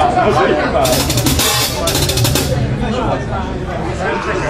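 Drum kit on a stage: about a second in, a quick run of fast drum and cymbal hits lasting about a second and a half, like a short fill between songs. A steady low hum sits underneath.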